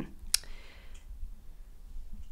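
A single short, sharp click about a third of a second in, over a low steady hum of room tone in a pause between speech.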